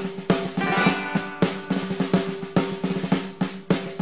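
Instrumental intro of a country song with a military feel: snare drum rolls and steady beats over a held low note.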